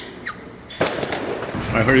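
A sudden sharp crack a little under a second in, followed by steady outdoor background noise, with a man's voice starting at the very end.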